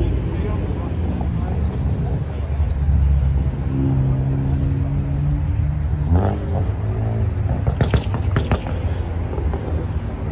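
A car engine idling nearby with a low steady rumble, under crowd chatter, with a few sharp clicks about eight seconds in.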